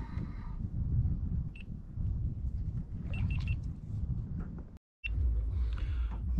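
Low, fluctuating rumble with short high electronic beeps: one about a second and a half in, then three quick beeps around three seconds in. The sound cuts out completely for a moment near the end.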